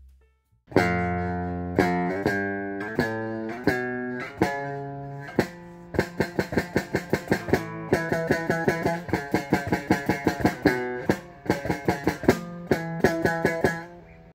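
Electric guitar, an Oktober Annihilator-style model, being played: ringing chords about once a second, then from about halfway a quicker run of picked notes at about four a second, fading out near the end.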